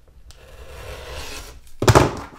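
Rotary cutter rolling along a ruler, slicing through the edge of an embroidered fabric pouch with a rough scraping sound for about a second and a half. It is followed near the end by a sharp knock, the loudest sound.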